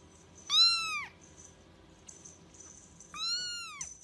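A young kitten meowing twice, high-pitched calls that rise then fall in pitch, the first about half a second in and louder, the second near the end.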